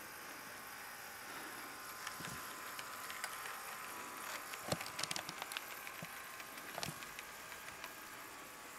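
Kato C44-9W model diesel locomotive running on DC with a steady high motor-and-gear whine and no sound decoder. Light clicks and rattles come from the wheels on the track, bunched a little past the middle.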